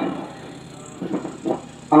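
A brief pause in a man's microphone announcement: low background murmur with a couple of faint voices, then his amplified voice comes back in near the end.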